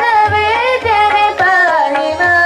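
Hindustani vocal music: girls' voices singing a devotional song to harmonium and tabla. The melody glides over the harmonium's held notes, with a few deep tabla bass strokes underneath.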